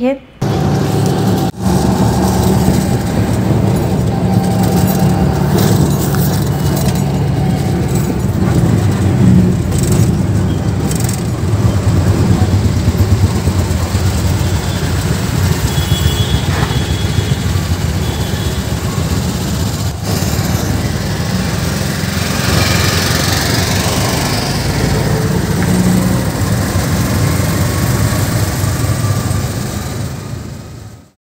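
Auto-rickshaw engine and road noise heard from inside the cabin: a loud, steady, low rumble while riding through traffic.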